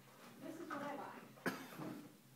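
A person coughing: one sharp cough about one and a half seconds in, among low, indistinct voice sounds.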